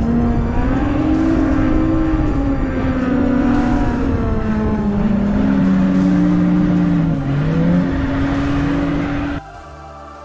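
SUV engine labouring and revving as it drives over sand dunes, its pitch slowly rising and falling over a low rumble. It cuts off suddenly near the end.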